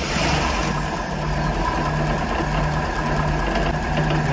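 Mercruiser 6.2 V8 marine engine idling steadily, just after starting.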